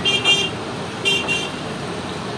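A vehicle horn honking twice, each time a quick double beep, the second about a second after the first, over a steady background of street noise.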